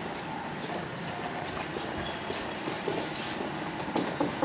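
A train running past, a steady rumble without a clear start or stop.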